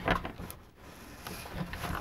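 Plastic housing of a Dirt Devil hand-held vacuum being handled and turned over: a knock and scrape at the start, a light click about half a second in, then faint rubbing.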